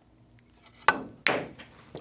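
Pool shot: the cue tip strikes the cue ball about a second in, and a moment later the cue ball clicks sharply into the object ball, followed by fainter knocks as the balls come off the cushions.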